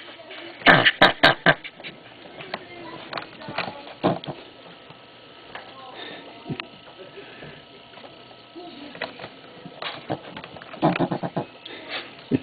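Brushtail possum screeching in bursts of short, harsh calls, a loud cluster about a second in and another near the end, with quieter sounds between. The possum is calling because it is disturbed.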